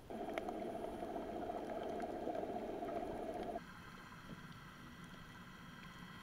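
Muffled water noise picked up by an underwater camera at the surface. It drops off abruptly a little over three seconds in to a quieter underwater hush with faint steady tones and a few small ticks.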